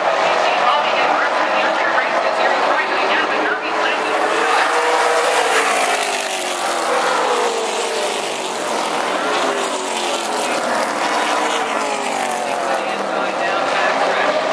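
Late model stock car V8 engines at racing speed on a short oval, several cars passing one after another, their pitch rising and falling as each comes by.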